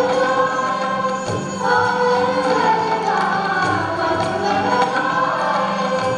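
Group of voices singing an Indian melody together, accompanied by sitars and tablas over a steady drone.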